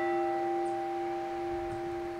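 A church bell's toll rings on after a single stroke, a steady hum with a few higher tones, slowly dying away. It is a memorial tolling for the COVID-19 dead.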